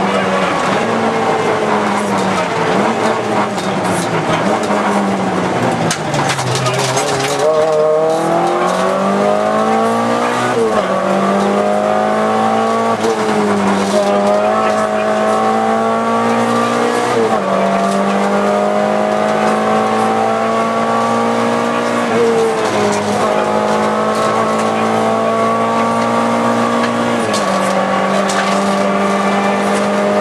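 Volkswagen Golf II GTI 16V's four-cylinder engine heard from inside the cabin at rally pace. The revs fall for a few seconds, then climb again in steps with short dips in pitch at the gear changes, and hold high near the end.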